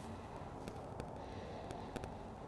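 Quiet room tone with faint handling noise: a few soft, brief clicks as hands work over a patient lying face down on a chiropractic table.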